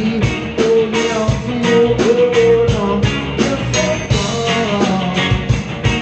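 Live rock band playing loud: electric guitars over a drum kit keeping a steady beat.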